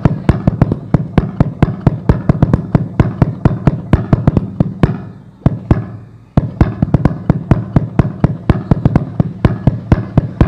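Loud, rapid rhythmic beating by hand close to the microphone, about six strikes a second, with a short break just after halfway: a spoken-word imitation of the tambo, the big Acehnese meunasah drum.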